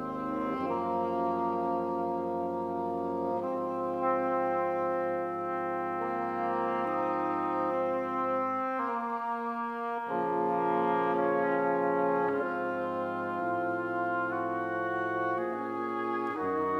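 Double-reed quartet (oboe, cor anglais, bassoon and contrabassoon) playing held chords that shift every second or few. The lowest line drops out for about a second around the middle, then comes back.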